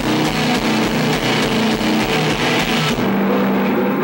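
Live rock band playing loud, distorted electric guitars over drums keeping a fast, steady beat. About three seconds in the drums and cymbals drop out, leaving a held guitar chord ringing on.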